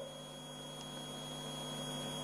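A pause in a man's speech: a quiet steady hum with a thin, steady high-pitched tone held underneath.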